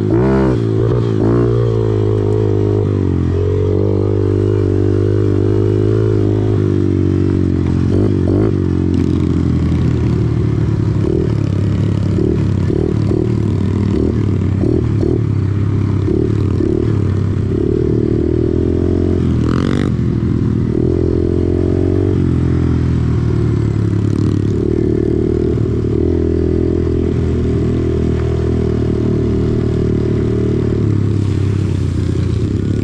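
Kawasaki KLX110R pit bike's single-cylinder four-stroke engine through a Big Gun EVO full exhaust, running under riding load on a dirt trail. The revs rise and fall over and over as the rider works the throttle and shifts gears, with one quick rev-up about two-thirds of the way through.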